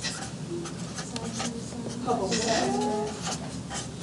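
A marker scratching on paper as numbers are written by hand, in short strokes, with a faint voice in the background about two seconds in.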